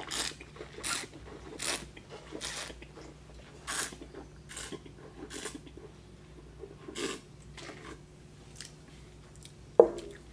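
A taster drawing air through a mouthful of red wine in a run of short, sharp slurps, about seven over six seconds, then spitting it into a metal spit bucket. A brief loud sound comes just before the end.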